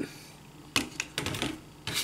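Hard plastic parts of a Hasbro Transformers Power of the Primes Abominus toy clicking as the foot piece is pressed and tabbed onto the leg: a quick run of four or five sharp clicks, the first about three quarters of a second in.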